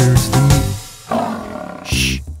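Bouncy children's song music breaks off under a second in, followed by a cartoon lion's roar sound effect; a short shush comes right at the end.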